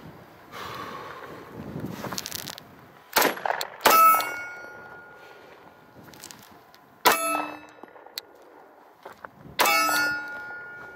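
Sig P6 (P225) 9mm pistol fired in a few slow, spaced shots, about four in all. Three of them are followed by the clang of a steel target ringing and fading for a second or more.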